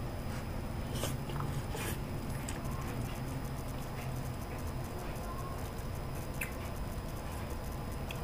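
A man slurping and chewing ramen noodles, with a few short sharp mouth sounds in the first two seconds, over a steady low hum.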